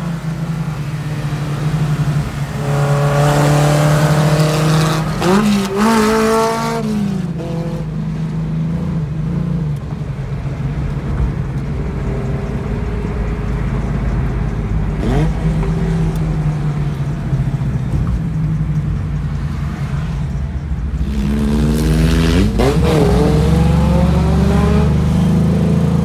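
Honda S2000 four-cylinder engine in a Ford Model A rat rod revving hard, its pitch climbing through the gears in runs a few seconds long, about 2 seconds in and again near the end. Between the runs it settles into steadier cruising under the road rumble, heard from inside a following car.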